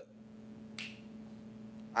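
Quiet room tone with a steady low electrical hum, broken once a little before the middle by a short soft hiss.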